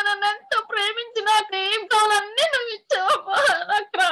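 A high-pitched voice in short, drawn-out, wavering phrases broken by brief pauses.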